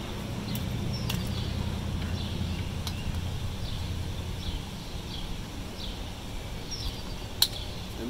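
Wheelchair chest-strap buckle being fastened: small clicks of strap and buckle handling, then one sharp click a little past seven seconds in as the buckle latches. A steady low hum runs underneath.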